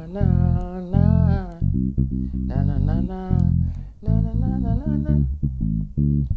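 Electric bass guitar playing a gospel reggae bassline in short plucked low notes, with a man humming the melody wordlessly over it in several phrases. The bass is strung with old strings, which make its tone sound funny.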